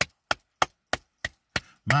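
Hand claps keeping a steady beat, about three claps a second, with a singing voice coming back in near the end.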